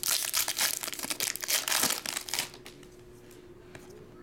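Foil trading-card pack wrapper being torn open and crinkled by hand, a dense run of crackling that stops about two and a half seconds in.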